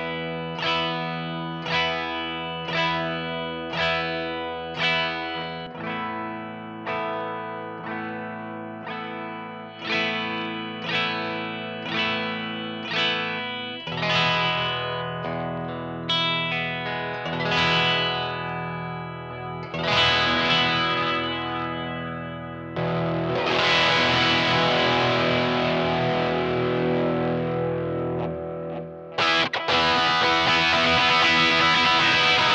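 Telecaster-style electric guitar played through effects pedals into a DSM Humboldt Simplifier DLX amp emulator in full stereo, one side a Vox AC-type amp and the other a Fender-type. For the first half it plays repeated picked chord figures about every 0.7 s. It then moves to fuller strummed chords, which become a loud, dense wash about two-thirds in and break off briefly near the end.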